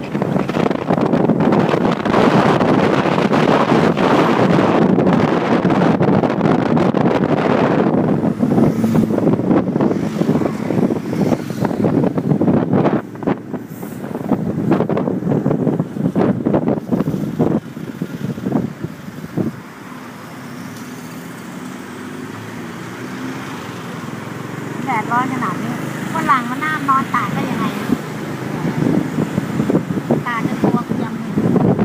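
Wind buffeting the microphone over the running engine of a motorcycle taxi as the bike rides through town. The wind is strongest in the first eight seconds, then eases as the bike slows in traffic, leaving a low engine hum. A few brief high warbling sounds come near the end.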